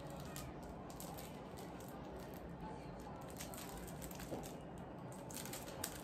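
Faint rustling and light clicks of a screen protector's cardboard box and plastic wrapping being handled and turned over, busier in the last second.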